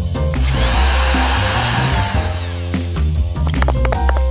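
A cordless drill runs for about two seconds, its whine rising and then falling, over upbeat background music with a steady beat.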